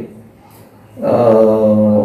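A short pause, then a man's voice holding one long, steady vowel for about a second, a drawn-out hesitation sound between words.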